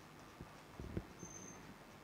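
Quiet pause with faint room tone and a few soft, low knocks, the loudest just before the middle.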